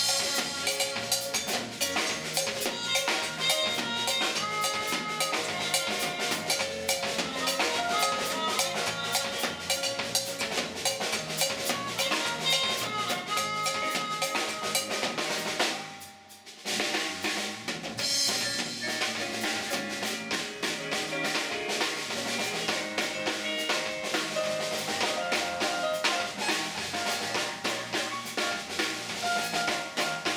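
Live band playing, led by a busy drum kit with snare rimshots and bass drum, under electric bass, trumpet and keyboard. About halfway through the music nearly stops for a moment, then the whole band comes back in.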